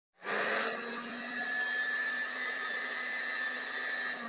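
Electric round-knife fabric cutting machine running with a steady high motor whine, starting about a quarter second in.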